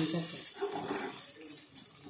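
A metal spoon stirring and scraping food in a non-stick kadai, with a faint frying hiss. A brief faint pitched sound comes about half a second in.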